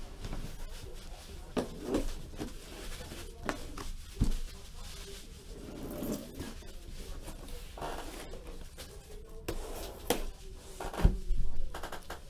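Box cutter slicing through the black packing tape on a cardboard box, with scraping and rustling as the box is worked open and a few knocks, the loudest near the end. The tape clogs the cutter's blade.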